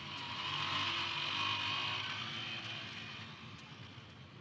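A road vehicle passing by in street traffic: its noise swells to a peak about a second or two in and then fades away.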